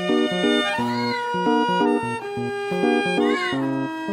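Background music with a steady, repeating pattern of notes, over which a cat meows twice, about a second in and again a little after three seconds in.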